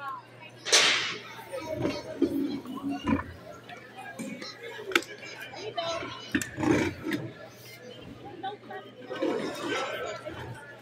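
Spectators chattering and calling out, with a brief loud rustle-like burst about a second in and a few scattered clicks.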